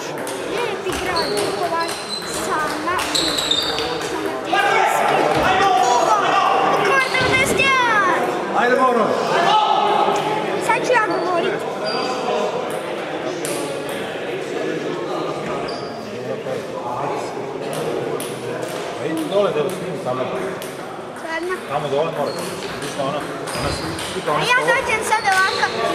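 Table tennis balls clicking off bats and tables at irregular intervals, with the echo of a large gym hall, over continuous background voices.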